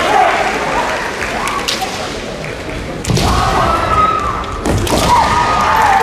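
Kendo fencers' kiai, long high-pitched shouts, with heavy thuds of feet stamping on the wooden floor as they strike, about three seconds in and again near five seconds.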